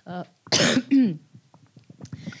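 A woman coughs into a handheld microphone: one sharp, loud cough about half a second in, trailing off into a falling voiced rasp.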